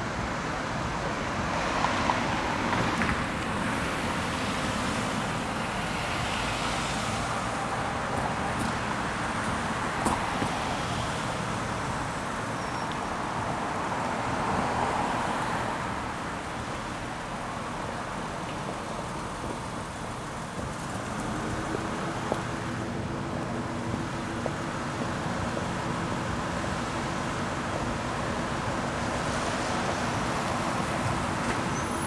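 City street traffic: cars passing one after another, each a swell of tyre and engine noise. From about two-thirds of the way in, a steady low engine hum joins it.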